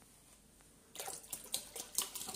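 Near silence for about a second, then a milk vending machine's dispenser begins pouring milk into a bottle with an uneven splashing flow. The machine is resuming after its automatic pause at the end of each litre.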